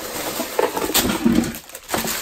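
Rustling and handling of a cap's packaging as it is taken out of its box, with two short, low murmured vocal sounds from the man, about half a second and just over a second in.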